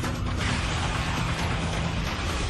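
A dense, noisy mechanical sound over a steady low hum, growing stronger about half a second in.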